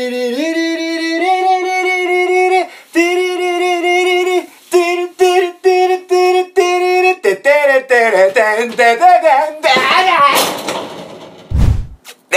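A voice singing a melody of held notes that step upward in pitch, then a run of short, clipped notes. About ten seconds in comes a rough, noisy burst, and a brief low thud just before the end.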